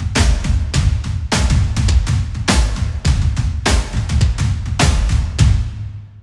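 Impact Soundworks Colossal Hybrid Drums sample library playing a heavy groove of mega-processed acoustic drums: deep low kick hits and snare cracks, with big hits a little over a second apart and smaller hits between. Each big hit leaves a long decaying tail, and the last one dies away near the end.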